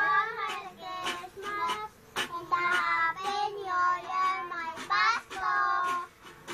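Young children singing in high voices, in short phrases with brief breaks between them.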